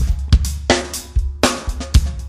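A sampled drum kit loop (kick, snare and hi-hat) playing through the Neve 88RS channel-strip EQ plugin. Narrow high-Q boosts on the hi-hat and kick drum bring out their ringing, making the kit sound totally overhyped.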